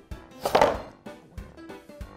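Background music, with one short knock and scrape of a flat-pack wooden board being handled about half a second in.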